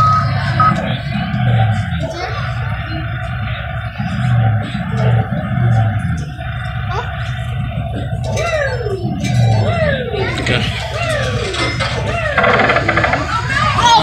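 Busy arcade din: background music with a low bass beat, mixed with people's voices.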